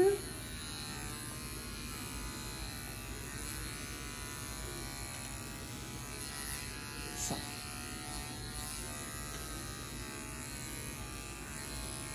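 Cordless dog grooming clippers with a #10 blade running steadily as they are worked over a cocker spaniel's muzzle and cheek, taking the coat short.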